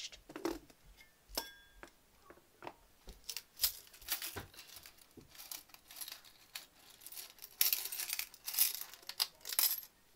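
Coins clinking and rattling inside a metal travel mug as it is handled and set down, a few sharp clinks ringing briefly. Near the end comes a longer, denser stretch of rattling and scraping, the loudest part.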